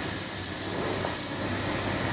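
Steady room noise: an even hiss with a low hum underneath.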